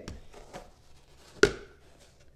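Handling of a card box and a trading card in a hard holder: faint rustling, then one sharp click about a second and a half in.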